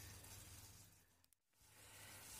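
Near silence: faint room tone, dropping out almost completely for a moment about midway.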